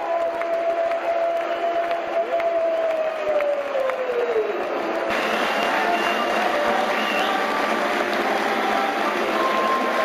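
Football crowd cheering, with a long drawn-out held note that falls away about four seconds in. About five seconds in, the sound changes abruptly to steady applause and cheering from fans in the stand.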